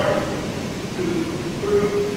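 A person speaking at a distance from the microphone, in short phrases, over a steady background hiss.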